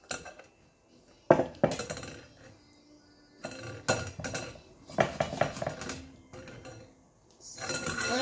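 Zucchini being grated on a small handheld grater over a glass bowl, in several bursts of short scraping strokes, with clinks of the metal grater against the glass.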